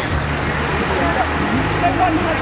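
Indistinct chatter of several people talking close by, over a steady hiss and low rumble.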